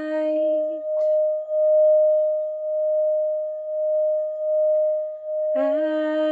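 Tibetan singing bowl, held on the palm, ringing with one steady sustained tone. About a second in the wooden mallet knocks the bowl, and the tone swells and wavers slowly in loudness. A woman's singing voice trails off at the start and comes back in near the end.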